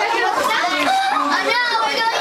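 Children's chatter: many high young voices talking and calling out at once, overlapping without a break.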